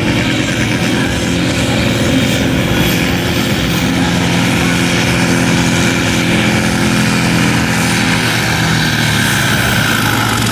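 John Deere pulling tractor's diesel engine running flat out under full load as it drags the weight sled down the pulling track, a loud, steady drone.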